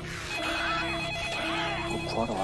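Desk telephone ringing: a steady electronic trill that starts about a third of a second in and stops near the end.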